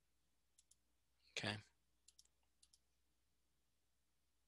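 Faint computer mouse button clicks: three quick double clicks spread over about two seconds, against near-silent room tone.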